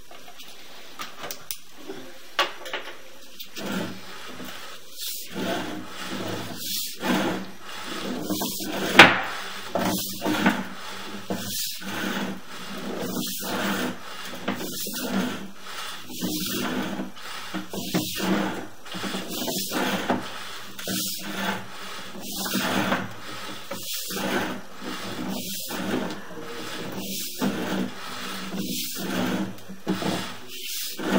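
Sewer inspection camera push cable being fed by hand into the drain line: a rubbing, rasping stroke about every one and a half seconds, with sharp clicks among them, starting about two seconds in.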